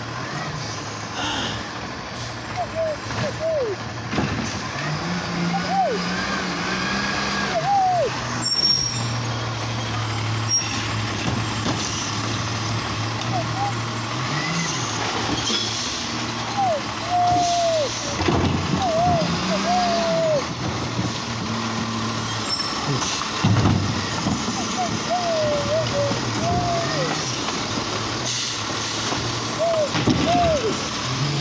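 Automated side-loader garbage truck at work: its diesel engine runs steadily and revs up twice for long stretches while the hydraulic arm lifts and empties a cart, with short rising-and-falling whines and a few sharp knocks or hisses from the arm, cart and air brakes.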